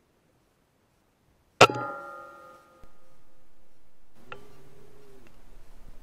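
A single shot from an Air Arms S510 .177 sub-12 ft/lb pre-charged pneumatic air rifle about a second and a half in: a sharp crack with a metallic ring that fades over about a second. Quieter mechanical clicks and a short steady hum follow a few seconds later.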